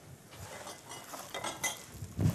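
A utensil stirring and scraping in a metal pan, with a series of light clinks and scrapes as rice is stirred over the heat.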